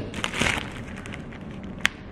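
Clear plastic zip-top bag crinkling as it is handled with a charred roasted pepper inside, the rustle strongest about half a second in, with one sharp click near the end.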